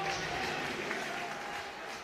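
Stadium crowd at a rugby league match: a steady wash of crowd noise with applause.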